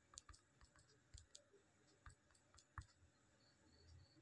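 Very faint, irregular clicks of taps on a phone's on-screen number keypad as a ten-digit mobile number is keyed in.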